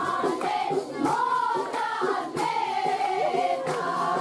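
A group of women singing a wedding song together in long, drawn-out lines, with a few scattered claps.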